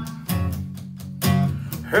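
Acoustic guitar strummed, two chords struck about a second apart and left ringing between them.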